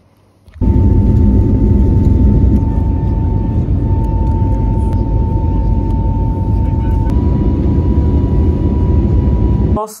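Airliner cabin noise in flight: a loud, steady rumble of engines and airflow with a faint steady whine above it, cutting in abruptly just after the start and cutting off just before the end.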